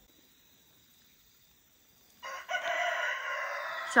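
Near silence for about two seconds, then a rooster crows once, a long call of nearly two seconds.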